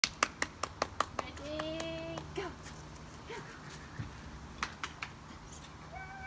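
A person calling puppies with a quick, even run of sharp claps, about five a second, that stops after just over a second. A short held vocal call follows, then a few brief scattered clicks.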